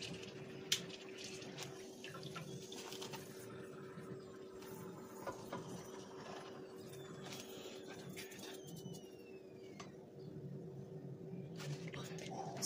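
Faint sizzling and crackling of hot oil as a sheet of dried wheat-flour churro duro fries in a frying pan, with light clicks of a metal spatula against the pan, one sharper about a second in. A steady low hum runs underneath.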